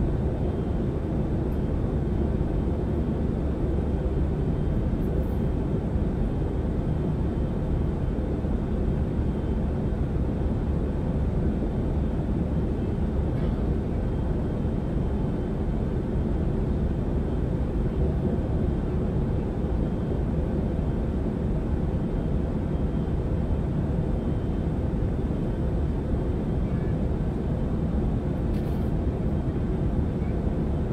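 Airliner cabin noise in flight: a steady low rumble of jet engines and rushing air, holding level without change.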